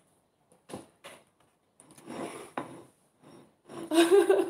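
Chewing and small mouth noises while eating fried eggplant that is charred on the outside: a few short, irregular bursts with quiet gaps between them.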